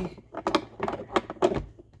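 Metal filter holder of a Capresso espresso machine clicking and scraping against the brew head as it is fitted and twisted toward its lock position, a series of sharp irregular clicks.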